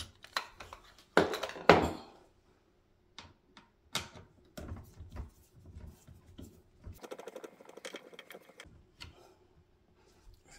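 Hand screwdriver and plastic pressure-washer parts clicking and knocking as screws are worked out and a handle piece is taken off. A louder clatter comes about a second in, and a quick run of small clicks near the eight-second mark.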